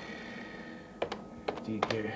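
Computer keyboard keys clicking as someone types: a single keystroke at the start, then a quicker run of irregular taps in the second half.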